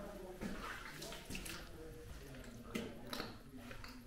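Footsteps splashing through shallow water on a wet concrete tunnel floor: several uneven wet slaps and splashes.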